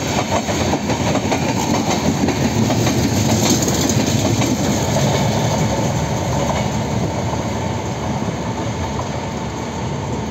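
Broad-gauge passenger coaches rolling past at speed, with a rush of wheel and rail noise and wheels clacking over rail joints. The sound eases a little toward the end as the tail of the train pulls away.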